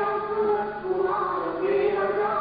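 A group of voices chanting a devotional song together, a steady melodic chant with held notes.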